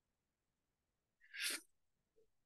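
Near silence, then about a second and a quarter in, one short, sharp breath sound from the woman, lasting under half a second.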